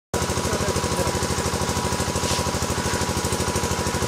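A steady engine-like drone that pulses rapidly and evenly, about ten beats a second, with a thin steady high tone running over it.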